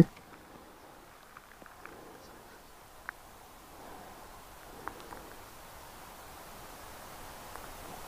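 White rhino grazing: faint rustling with a few soft, sharp clicks as grass is cropped.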